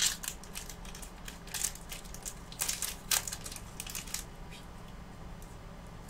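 Pokémon trading card booster pack's foil wrapper crinkling and tearing as it is opened, a dense run of crackles for about four seconds, then quieter handling near the end.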